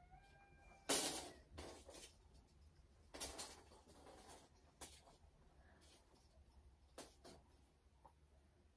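Steel tape measure being pulled out and handled against a wall: a handful of short scraping, rustling noises, the loudest about a second in.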